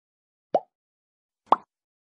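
Two short pop sound effects from a subscribe-button animation, about a second apart, the second a little higher in pitch and louder.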